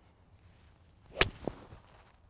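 Golf iron swung at a ball from turf: a brief swish building into a sharp click of the clubface striking the ball about a second in, then a duller knock a moment later. The strike is clean, ball first, with the bottom of the swing past the ball.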